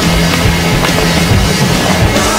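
Loud rock music.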